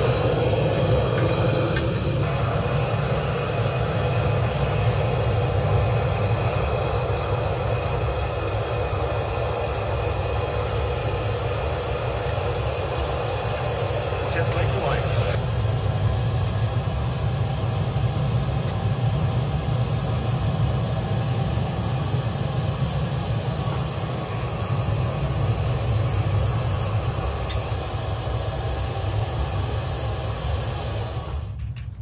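Gas burner of a small crucible melting furnace running with a steady rushing noise. About halfway through, the higher part of the noise drops away and a duller rush goes on.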